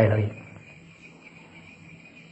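Crickets chirring steadily in the background, a continuous high trill that carries on through a pause in a man's speech.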